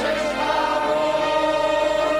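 A group of voices, choir-like, holds one long sung note at a steady pitch over the song's musical backing.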